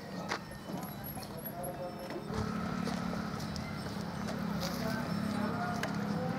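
Small engine of a child's mini motorcycle starting about two seconds in and then running steadily, after a few knocks and clicks as the boy gets on.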